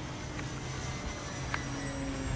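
Steady low drone of an electric RC Spitfire's brushless motor and propeller in flight, heard from the ground, with a few faint ticks.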